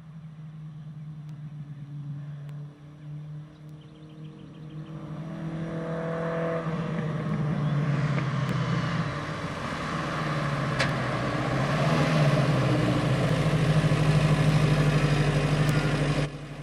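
A car engine running at a steady, unchanging pitch, growing steadily louder as the car drives up and approaches.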